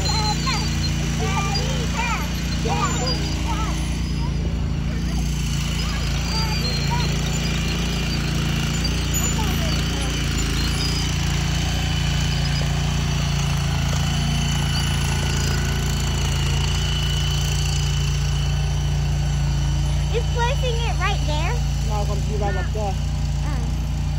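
Small engine of a shed-moving machine running steadily as it pushes a portable building, a low even drone with brief voices over it.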